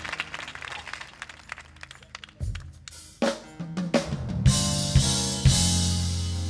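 Live gospel band with drum kit: scattered drum and cymbal hits over a quieter stretch, then about four and a half seconds in the full band comes in with held chords and heavy kick-drum beats.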